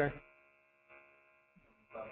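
Faint steady hum with many even overtones on the call audio, after a spoken word trails off at the start; a faint voice returns near the end.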